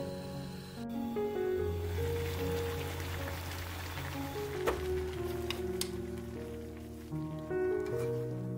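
Background music with steady sustained notes, over water boiling hard in a wide pan of bracken fern stems: a fizzing, bubbling hiss that comes in about a second in and fades near the end.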